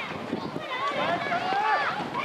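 Children's voices shouting and calling over one another, several at once, in high pitches.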